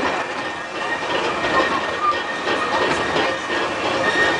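Severn Lamb park train running along its track, heard from an open-sided passenger carriage: a steady running noise of wheels on the rails.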